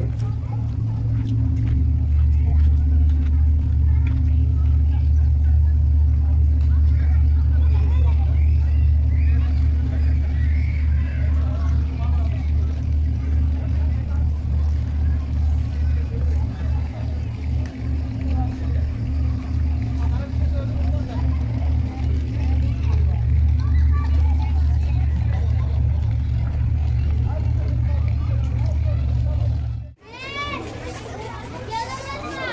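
Deep, steady engine hum from a large high-speed catamaran ferry moored at the pier.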